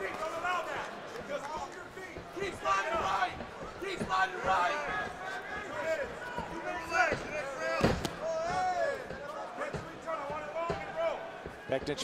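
Shouting voices from cageside and the arena crowd during an MMA bout, with one sharp thud about eight seconds in.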